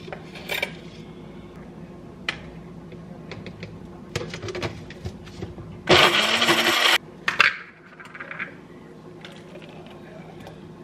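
A countertop blender runs loudly for about a second with a thin high whine, then cuts off suddenly. Before it come scattered light clicks and taps of a plastic scoop and powder tub, and a few more clicks follow.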